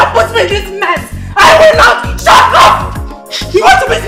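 Raised, shouting voices in a heated argument over background music with a steady low bass.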